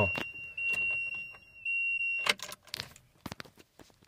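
A truck's dashboard warning buzzer gives one steady high-pitched tone that cuts off a little over two seconds in. A few sharp clicks and brief rattles follow.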